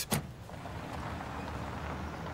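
Car engine idling, a low steady rumble.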